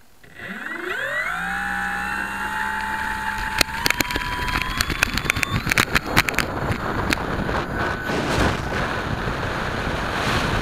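Brushless electric motor of a Freewing SBD Dauntless RC foam warbird spooling up from standstill with a steeply rising whine, holding a steady high whine, then climbing again as more throttle is added for the takeoff roll. A quick run of sharp clicks and rattles comes during the ground roll, and in the last few seconds a rush of wind over the wing-mounted camera covers much of the whine as the plane lifts off.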